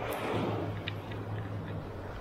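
Shallow surf washing up over wet sand, strongest in the first half second, with a low steady hum underneath and a faint tick about a second in.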